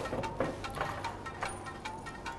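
A quiet pause at a bar counter with a few faint, light clicks from glassware and bar items being handled.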